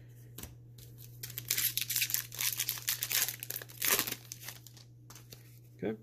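Foil wrapper of a Magic: The Gathering Kaldheim set booster pack being torn open and crinkled by hand. It comes as a run of quick rustling, tearing bursts starting about a second in and lasting about three seconds.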